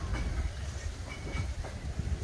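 Outdoor beach ambience dominated by wind rumbling on the microphone, with faint distant voices of beachgoers.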